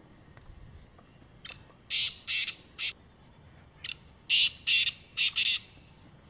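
Black francolin calling twice, a couple of seconds apart. Each call is a short faint note followed by three or four loud notes in quick succession.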